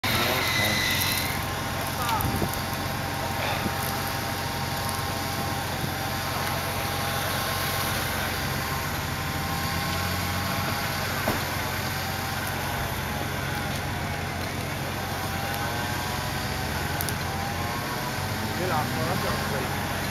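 Off-road 4x4 engine revving up and down repeatedly as the vehicle drives through mud, over a steady low hum.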